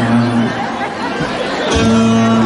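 Audience chatter with a brief held note early on, then backing music comes in about a second and a half in with steady sustained chords and bass.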